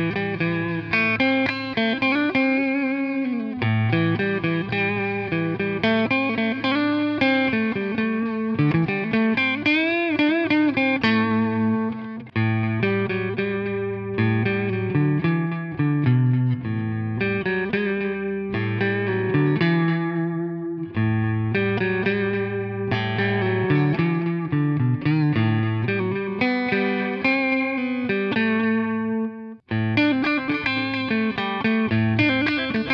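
Electric guitar playing single-note lead phrases through a NUX Time Force digital delay pedal, first on its tube echo setting and then on its tape echo setting. There are bent notes with vibrato near the middle.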